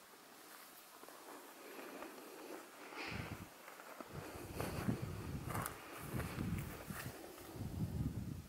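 Soft, irregular footsteps on grassy ground, starting about three seconds in after a quiet stretch.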